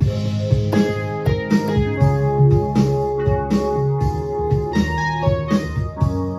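Backing track played back by a Yamaha CK61 stage keyboard's audio trigger from a file on a USB stick, starting abruptly: keyboard music with held organ- and piano-like chords over a bass line.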